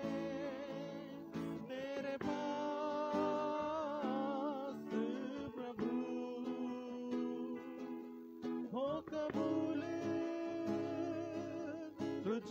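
Live Hindi worship song: women singing into microphones with an acoustic guitar strumming along, backed by keyboard and hand drums.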